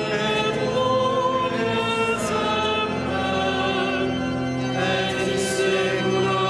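Voices singing a liturgical chant of the Vespers office, in long held notes with a slight vibrato and brief sibilant consonants.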